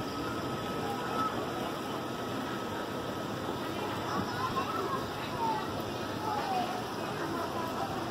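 Outdoor ambience around a swimming pool: indistinct voices of people in the distance over a steady wash of noise.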